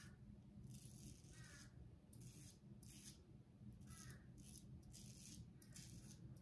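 Faint scraping of a OneBlade single-edge safety razor with a Feather blade cutting through lathered stubble, in a series of short strokes.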